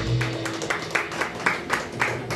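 The band's final chord rings out and fades in the first half second, then a small audience starts clapping, in separate claps rather than a dense roar.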